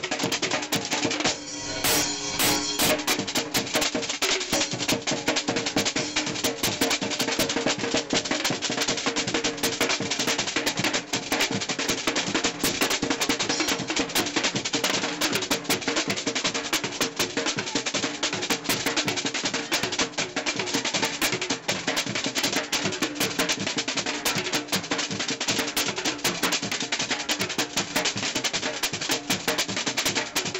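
Street drumline playing live: snare, tenor and bass drums beating out a fast, dense rhythm that runs on without a break.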